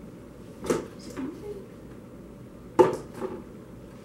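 Objects being handled and set down on a table: two sharp knocks about two seconds apart, the second louder, each followed by a smaller clatter.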